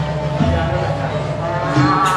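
Balinese gamelan music with low, steady tones held beneath the melody.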